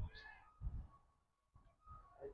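A short, faint, high-pitched animal call right at the start, with a few faint low bumps after it.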